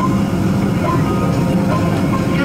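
Steady low drone inside the cabin of a Boeing 767-300 on the ground with its jet engines running.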